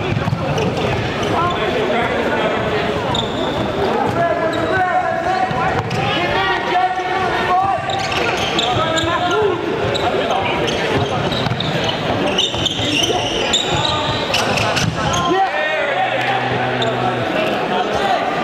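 Sneakers squeaking and feet pounding on a hardwood gym floor during fast indoor play, with players' shouts echoing around the large hall.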